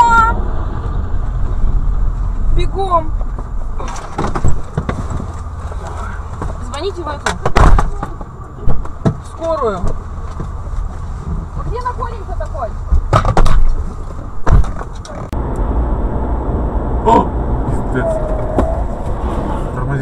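Car cabin sound with a low rumble, broken by several sharp knocks and clatters and by short voice exclamations. In the last few seconds it turns to the steady engine and road noise of a car driving.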